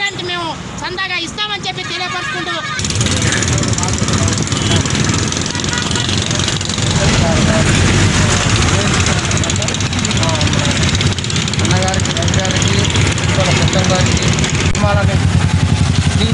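A man speaking, then after about three seconds a loud, steady vehicle and road-traffic noise with a low rumble takes over, with another man's voice faint beneath it.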